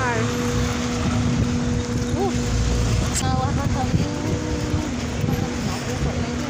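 Street traffic with a bus engine running close by, a steady low hum and rumble, with voices here and there.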